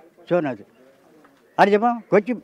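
A man speaking Malayalam. His speech breaks off for about a second in the middle, leaving only a faint low wavering sound, before he starts again near the end.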